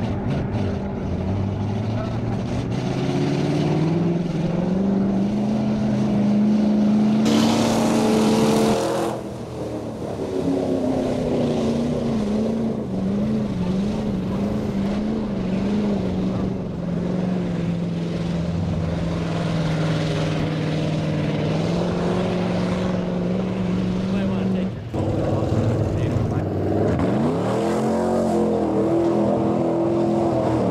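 Mud truck engines revving hard as the trucks churn through a deep mud pit, with mud and water splashing. The engine pitch climbs steadily for several seconds, then wavers with the throttle. The sound changes abruptly twice, about 9 and 25 seconds in, as a different run begins.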